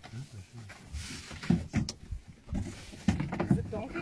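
Low voices in the background, broken by several sharp knocks or clicks: two about a second and a half in, two more after three seconds.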